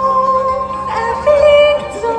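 Live folk metal band playing: a melody of long held notes over a steady low drone, the melody moving to a new note a little past the middle.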